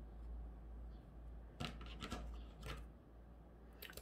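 Scissors snipping through narrow grosgrain ribbon: a few short, faint cuts about midway.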